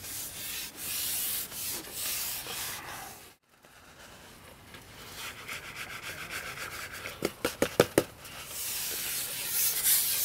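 Carbon fishing pole being handled and slid out over the bank, a rough rubbing, scraping noise, broken by a sudden cut. Later comes a quick run of sharp clicks and knocks at the pole tip as the bait is put in at the margin.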